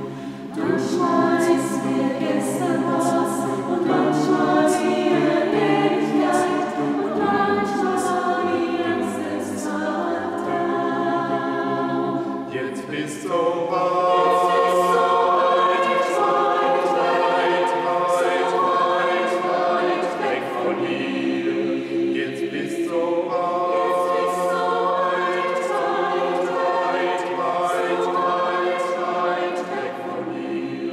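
Small mixed vocal ensemble of men and women singing a cappella in a reverberant church. The song runs in phrases, with short breaks about 13 and 23 seconds in.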